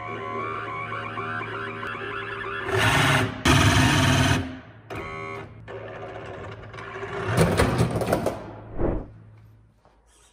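Brushed 550-size electric motor and gear drive of a 1/10-scale RC crawler whining steadily, surging louder twice under throttle, with a thump just before the sound dies away near the end.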